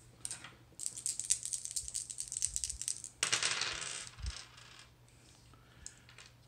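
Three plastic six-sided dice rattled quickly in a cupped hand for a couple of seconds, then thrown with a sudden clatter about three seconds in, tumbling to rest within about a second.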